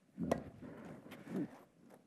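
Tennis racket striking a ball: one sharp pop about a third of a second in, then a fainter hit just over a second in, as a fed ball is played at the net.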